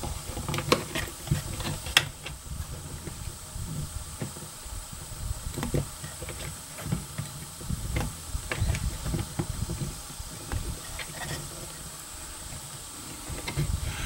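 Handling noise of a front shooting rest being raised and adjusted on a wooden bench: irregular low knocks and rubbing, with a few sharp clicks.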